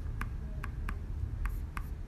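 Clicks from a laptop in use: about five sharp, irregularly spaced clicks, with a low steady rumble underneath.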